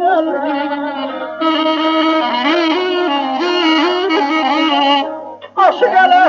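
Azerbaijani ashiq folk music: a melody of long, sliding and ornamented notes over a low held tone, dipping briefly about five seconds in before resuming.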